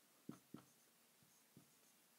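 Near silence with a few faint taps of a marker pen on a whiteboard as it writes.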